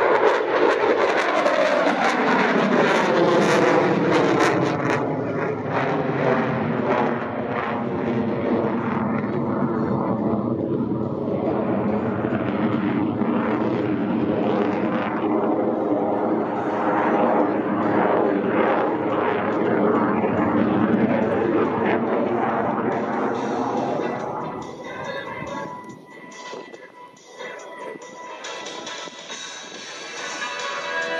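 Jet noise from an F/A-18F Super Hornet's twin General Electric F414 turbofans as the fighter manoeuvres overhead, with a whooshing tone that slides in pitch as it moves. The noise fades away about 24 seconds in, leaving quieter music.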